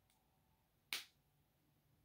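Near silence, broken once about a second in by a single brief, sharp sound.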